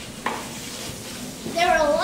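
Steady background hiss with a short sound about a quarter second in, then a young girl's voice starting loudly about one and a half seconds in, its pitch wavering.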